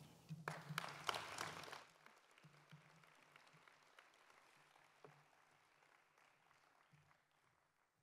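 Audience applause, loudest in the first two seconds, then thinning to faint scattered claps that die away near the end.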